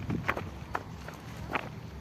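Footsteps: a few sharp, irregularly spaced steps over a low background rumble.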